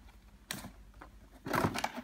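Cardboard game box being opened by hand: a short click about half a second in, then a louder rustle of cardboard near the end.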